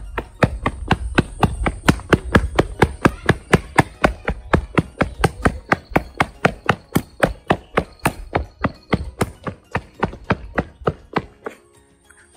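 Quick footsteps on a concrete path, about four steps a second, over a low rumble; the steps grow fainter and stop shortly before the end.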